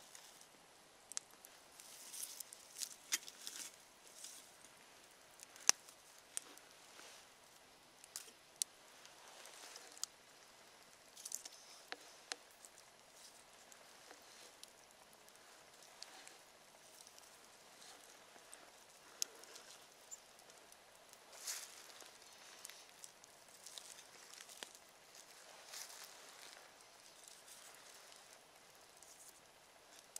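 Faint, scattered crackles and snaps of a small wood campfire, with a few short bursts of rustling as sticks are moved in the fire.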